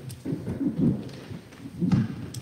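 Handling noise: low, irregular thumps and rumbles of things being moved about on the meeting table, with a sharp knock near the end.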